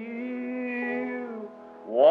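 A hymn starting on an old taped sermon recording: voices hold a long, slightly wavering note, then fall away briefly before louder singing comes in at the end.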